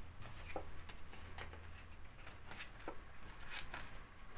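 Tarot cards being gathered up off a cloth-covered table: faint, scattered clicks and rustles of card against card, about five light clicks spread across the few seconds.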